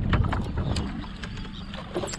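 Wind buffeting the microphone over water lapping at a small boat's hull. There are several sharp clicks and knocks in the first second, and the rumble eases after that.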